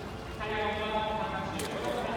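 People's voices talking, growing louder about half a second in, with a brief sharp click or splash about one and a half seconds in.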